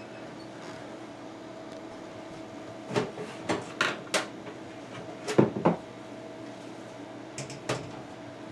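Steel side panel of a PC tower case being worked loose and slid off: a run of sharp metallic clicks and knocks about three seconds in, the loudest pair around five and a half seconds, and a few quick clicks near the end.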